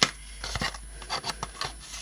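A small cardboard pen box being handled: card sliding and rubbing, with a sharp click right at the start and scattered small taps after it.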